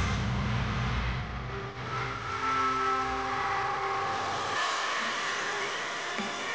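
Show soundtrack over the arena sound system: a deep rumbling swell that fades out about a second and a half in, followed by a few long held tones.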